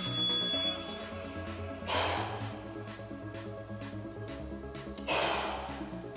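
Background music with a steady beat. A man gives two sharp, hissing exhalations of effort while lifting dumbbells, about two seconds in and again near the end.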